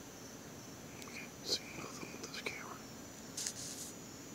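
Soft whispering close to the microphone, in short hissy fragments from about a second in and again near the end. Behind it, insects, likely crickets, keep up a steady high chirring.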